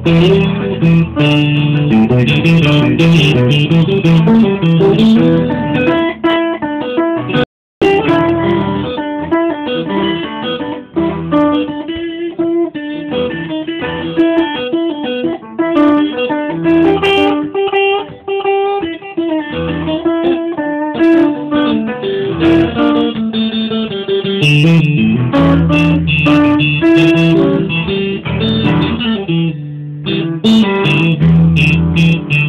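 Instrumental passage of live band music on electric guitar and upright piano, with no singing. The sound cuts out completely for a moment about seven and a half seconds in.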